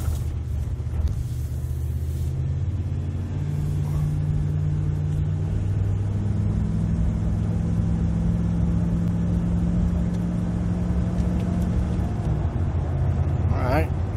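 Dodge Ram 1500 pickup engine and automatic transmission heard from inside the cab while driving. The engine note steps up about three seconds in and again about six seconds in, holds, then drops about two seconds before the end as the transmission shifts, which the driver judges to be good shifts after the new governor pressure solenoid.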